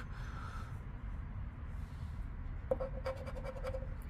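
Faint scraping of a scratch-off lottery ticket's coating being rubbed off, ending in a quick run of short scrapes in the last second or so.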